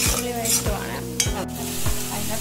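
A steel ladle scraping and stirring a chopped onion filling frying in an iron kadai, with a few sharp scrapes against the pan over a steady sizzle. Background music with a steady beat, about one beat every 0.6 s, runs underneath.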